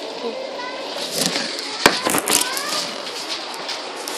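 Handling and rustling noise with a sharp knock about two seconds in, under faint children's voices.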